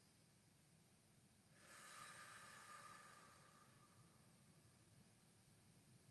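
Near silence, with one faint, slow, deep breath starting about a second and a half in and fading over a couple of seconds.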